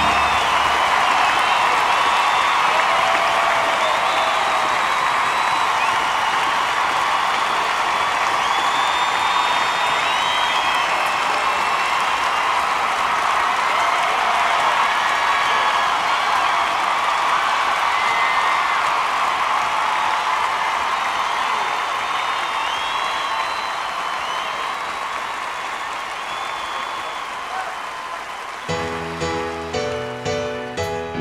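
A large audience applauding and cheering, with whistles, in an ovation after a song's final chord. The applause slowly dies down, and near the end the band starts playing again with drums.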